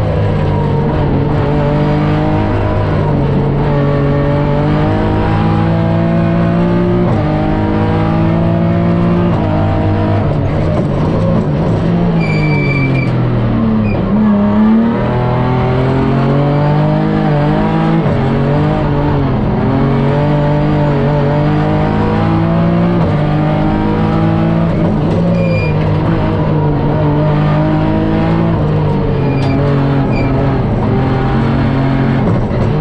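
BMW M3 E36's straight-six engine heard from inside the cockpit, revving hard and climbing through the gears of its Drenth sequential gearbox, the revs dropping sharply at each quick shift. About halfway through, the revs fall away under braking and downshifts, then climb again.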